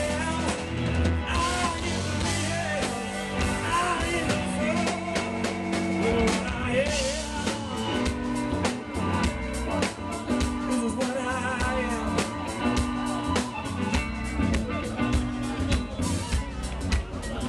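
Live blues-rock band playing an instrumental passage: electric guitar with bending notes over bass guitar and a steady drum kit beat.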